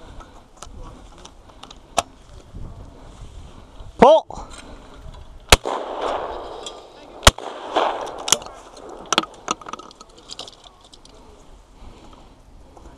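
Shotgun fired twice at clay targets, two loud sharp reports nearly two seconds apart, a little after a short loud shout. Fainter sharp reports are heard before and after.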